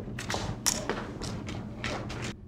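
A quick, irregular series of sharp clicks and knocks, the loudest about two-thirds of a second in, over a steady low room hum.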